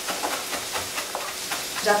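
Kitchen knife chopping fresh parsley on a cutting board in a quick series of light chops, over the steady sizzle of mushrooms frying in a wok.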